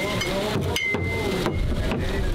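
Glass beer bottles clinking as they are lifted out of a chest cooler and set down on it, one clink ringing on for about half a second. Faint voices, and low wind rumble on the microphone in the second half.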